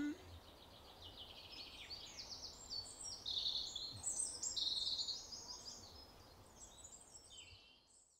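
Songbirds singing, a run of quick high chirps and trills in changing phrases over faint outdoor background noise, fading out near the end.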